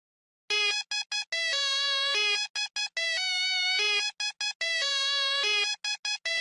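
Music: an electropop song's intro with a bright synthesizer riff played alone, starting about half a second in. It mixes short detached notes with longer held ones in a phrase that repeats.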